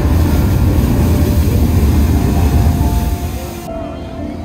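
La Bufadora sea blowhole erupting: a loud rush of surging water and spray with a deep rumble, which cuts off abruptly near the end.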